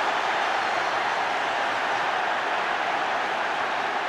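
Large stadium crowd cheering after a goal, a steady, unbroken roar.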